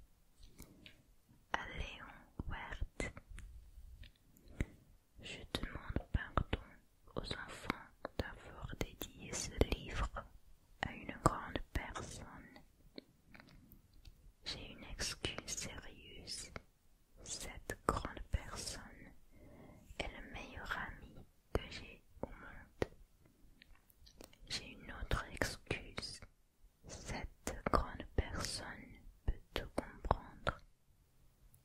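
Close, soft whispering in French, phrase by phrase with short pauses between: a whispered reading aloud.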